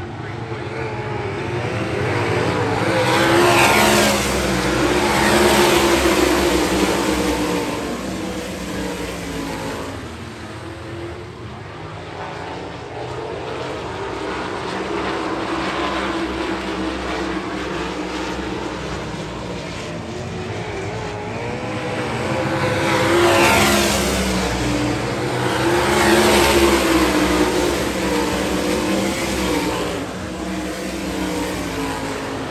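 A field of sprint cars racing on a dirt oval, engines at full throttle. The sound swells loud twice as the pack passes close by, about a lap apart, with engine pitches rising and falling as the cars go past, and falls back while they run the far side of the track.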